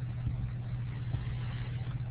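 A steady low hum with a faint hiss above it: background equipment or room noise.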